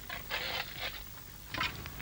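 Digging spades scraping and cutting into soil in a trench: a few short scrapes, the longest about half a second in.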